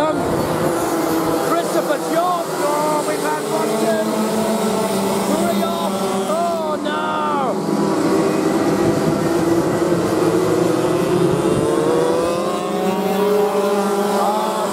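A pack of 125cc two-stroke TAG racing karts on track. Several engine notes overlap, rising and falling as the karts brake and accelerate through the corners, with a quick rise and fall in pitch about halfway through.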